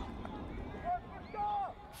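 Faint, brief shouts from players calling to each other on a rugby field, over a steady low background rumble.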